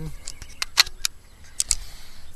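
A quick run of sharp clicks and knocks, about seven in two seconds, the loudest a little before the middle.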